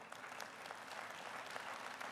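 Faint audience applause: many hands clapping in an even spread of claps, with no single clap standing out.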